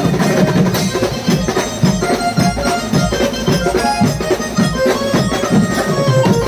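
Live street beats band playing a fast traditional dance number: drums beating a dense, driving rhythm under a loud, held melody line that steps from note to note.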